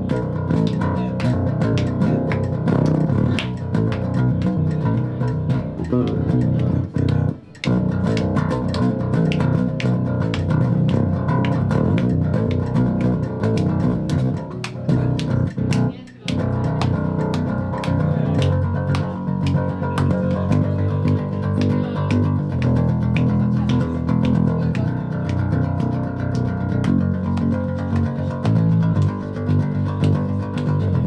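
Many-stringed electric bass being played, a continuous run of low notes with two brief breaks, about seven and a half and sixteen seconds in.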